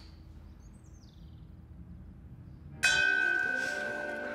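Faint room tone with a brief chirp about a second in. Near the end a bell is struck once and rings on, slowly fading.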